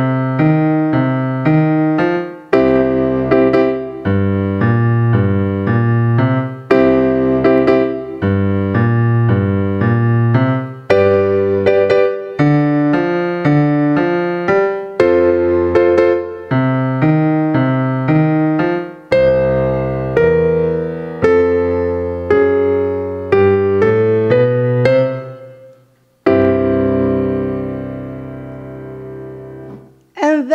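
A 12-bar blues boogie played on a digital piano at a steady tempo: a walking bass line in the left hand under triad chords in the right. Near the end, both hands walk together into a final chord that is held and fades for about four seconds.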